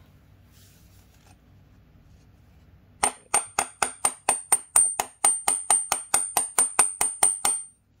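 Claw hammer tapping rapidly on a large 12-point socket held on a new oil control valve gasket, driving the gasket down into its seat in the valve cover. About three seconds in, an even run of some twenty sharp metallic taps begins, four to five a second, each with a high ring from the socket.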